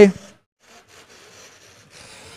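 A man's voice ends a word just after the start; then only faint, even background noise of the robotics arena, with no distinct event in it.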